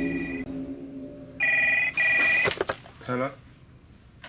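Telephone ringing: a two-tone electronic ring in two quick bursts about a second and a half in, as music fades out. A few sharp clicks follow as the corded handset is lifted, then a brief voice.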